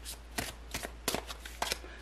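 A tarot deck being shuffled overhand, cards slapping down in short sharp clicks, about four a second.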